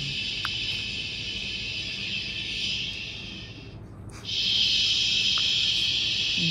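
Baby Shusher sleep soother playing its steady recorded 'shh' hiss. It breaks off for a moment about four seconds in, then starts again.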